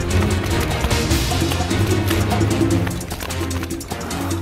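Music with a steady beat, bass and pitched instruments.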